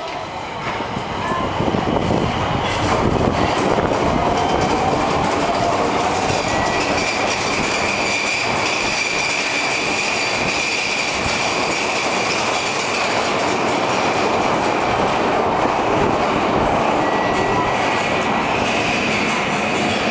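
Nagoya subway N1000-series electric train pulling away from the platform and accelerating past close by. A motor whine rises in pitch over the first several seconds, with wheels clattering on the rails and a steady high-pitched tone from about six seconds in. The sound swells over the first two seconds and then holds loud and steady.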